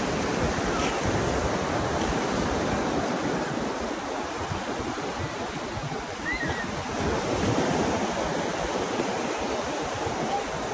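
Small waves washing up on a sandy beach in a steady rush, with wind buffeting the microphone in low, uneven rumbles.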